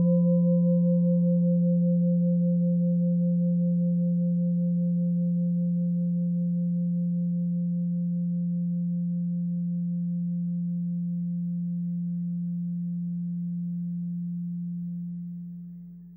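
A struck Buddhist bowl bell ringing out on one low steady tone with a fainter higher overtone, slowly fading away and dying out near the end.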